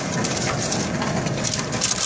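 Paper receipt crinkling as it is handled and drawn out of the return machine's slot.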